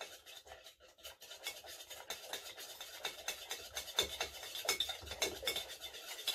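Metal bar spoon stirring in the base of a stainless steel cocktail shaker, dissolving honey into lemon juice: a rapid run of light clinks and scrapes, sparse at first and busier after about a second and a half.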